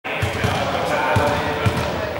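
A ball bouncing on a sports-hall floor, about four irregular thuds, over background voices.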